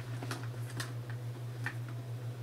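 About four light clicks and taps as small items are handled and packed into a handbag, over a steady low hum.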